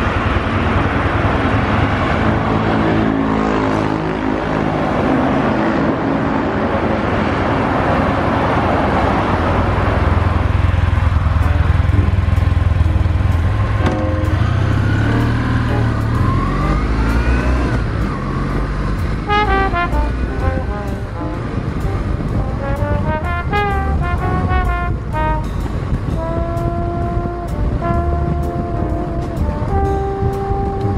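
Kawasaki W800 Final Edition's air-cooled vertical-twin engine running through its Cabton-style mufflers, its pitch rising and falling as it rides. About two-thirds of the way in, background music with stepping, bell-like notes starts over the engine.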